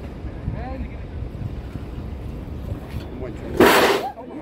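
Water poured into a hot borehole in volcanic ground flashes to steam and erupts as an artificial geyser: a sudden, loud whoosh of steam about three and a half seconds in, lasting about half a second. Before it, wind on the microphone and a faint murmur of onlookers.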